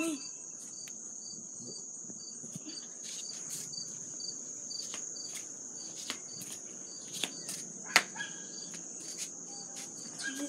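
A steady high-pitched insect trill with a faint pulse about twice a second. Scattered clicks and knocks from a handheld phone being moved come over it, the sharpest about eight seconds in.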